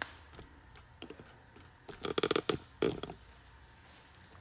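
Close handling noise: a quick run of clicks and rustles about two seconds in, then a shorter run a little before three seconds, against quiet room tone.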